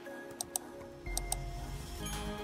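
Background music with sustained tones and a low bass note, broken by two pairs of sharp clicks, the first pair about half a second in and the second about a second and a quarter in.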